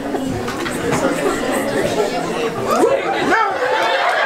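Audience chatter: many voices talking over one another at once, with no single speaker standing out.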